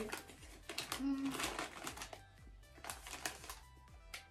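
Crunchy, peanut-shaped Smoki crisps being chewed and their packet crinkling as it is handled, heard as a run of quick sharp crunches and rustles over quiet background music.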